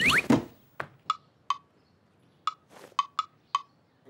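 Cartoon sound effects: a quick rising whistle-like swoop, then seven short plinks, each with a brief ringing tone, coming at uneven intervals with quiet between them.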